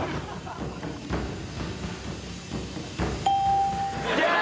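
Stage smoke hissing into game-show pods, with a few dull thumps. About three seconds in, a steady electronic game-show tone starts and holds to the end.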